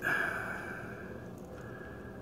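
A short breath out that fades over about half a second, followed by a faint steady background hiss.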